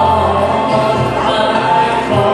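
Live band music: a woman singing held notes into a handheld microphone over keyboard accompaniment, heard through the PA.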